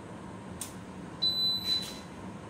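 Electronic shot timer sounding its start beep: one steady, high-pitched tone lasting well under a second, beginning a little past halfway. It is the signal for the shooters to draw and fire.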